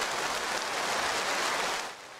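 Sustained applause from many people clapping in a large assembly hall, a steady dense clatter that cuts off suddenly near the end.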